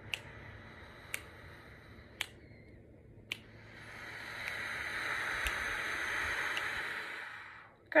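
A person breathes in slowly and steadily for about three and a half seconds, then breathes out for about four seconds, the out-breath louder and swelling before it fades. This is a controlled four-count inhale and four-count exhale done as a wind player's breathing exercise. A light click sounds about once a second, marking the beat.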